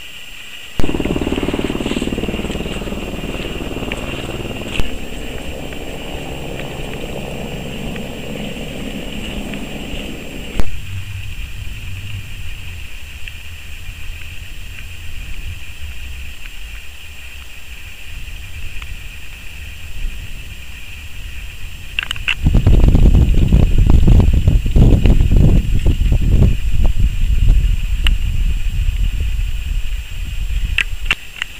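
Wind rumbling and buffeting on the camera's microphone, in gusty stretches: one from about a second in to about ten seconds, and a louder, rougher one from about 22 seconds. A faint steady high whine runs underneath.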